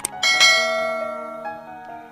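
Subscribe-button animation sound effect: a sharp click, then a bell chime that rings out and fades over about a second, over soft background music.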